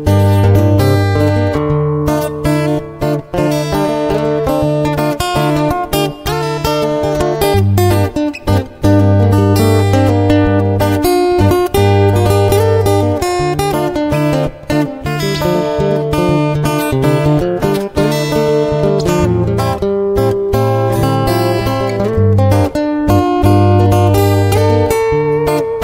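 Background music: steady strummed acoustic guitar with a bass line.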